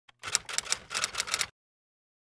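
Typewriter-style key clicks used as a title sound effect, a quick run of several strikes a second for just over a second, cutting off suddenly.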